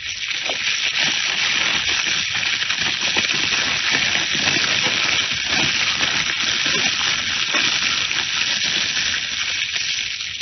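Radio-drama sound effect of a house fire: steady crackling and hissing that swells just after the start and eases off near the end.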